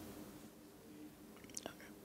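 Near silence: room tone with a faint steady hum and a few soft clicks late on.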